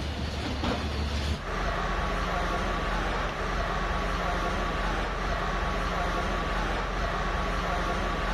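Diesel engines of hydraulic excavators running steadily as they demolish a masonry minaret. About a second and a half in, the sound changes abruptly from a deep low hum to a steadier, more even machine noise.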